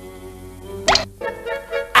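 Cartoon soundtrack music with held, sustained notes, broken about a second in by a short, sharp pop sound effect.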